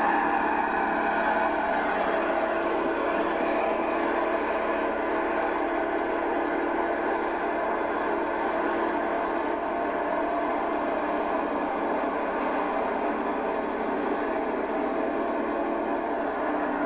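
A large cab tractor's engine running with a steady, unchanging drone.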